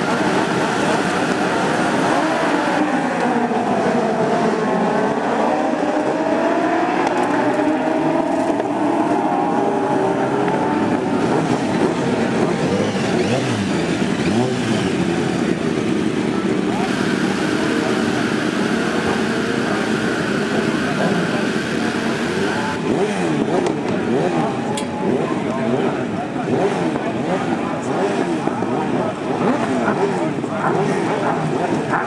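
Several racing motorcycle engines running and revving together, their pitches rising and falling across one another. The mix changes abruptly a few times.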